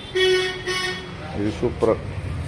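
A horn tooting twice in quick succession, two short blasts in under a second, followed by a man's single spoken word.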